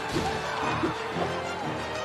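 Dramatic film-score music, busy and dense, with a short hit near the start.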